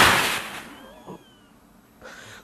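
A man breathing out hard in one forced breath: a sudden rush of air that is loudest at once and tails off over about a second. This is a forced expiration, the manoeuvre of a spirometry test, with peak flow at the start and then falling away.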